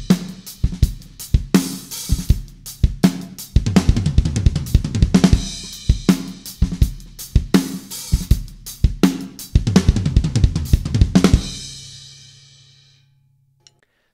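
Drum kit played up to speed: a beat with kick, snare and hi-hat running into a fast fill of kick strokes alternating with hand strokes on the rack tom, floor tom and snare. The playing stops about 11 seconds in and the drums and cymbals ring out, fading over about two seconds.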